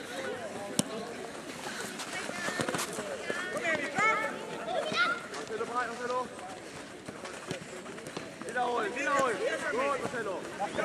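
Shouts and calls from high-pitched young voices during play on a football pitch, coming in two spells, one in the middle and one near the end, over open-air background noise. A single sharp knock comes about a second in.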